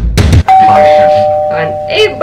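Drum-heavy intro music cuts off about half a second in, and a two-tone ding-dong chime follows: a higher note, then a lower one, both ringing on and slowly fading.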